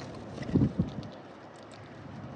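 Two short, low buffeting thumps about half a second apart from a mourning dove right against the microphone, over faint ticking of birds pecking at seed.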